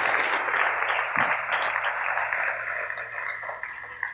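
Congregation applauding, the clapping dying away over the few seconds.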